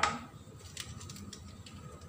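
A few faint clicks and rustles of a plastic noodle sauce sachet being handled in the fingers.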